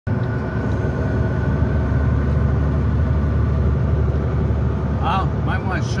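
Steady engine drone and road rumble inside a truck cab at highway speed. A man's voice starts near the end.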